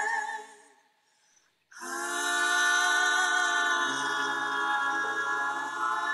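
Female vocal trio singing close harmony: a held chord with vibrato fades out within the first second, and after a short gap a new chord comes in and is held, with a low note joining about four seconds in.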